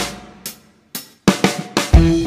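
Background music: a drum fill of separate drum and cymbal hits, about half a second apart at first and then coming faster toward the end.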